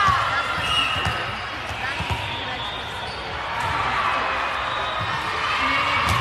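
A volleyball bouncing a few times on a hardwood gym floor, dull thumps about a second apart near the start and again at the end, under the chatter of players and spectators echoing in the hall.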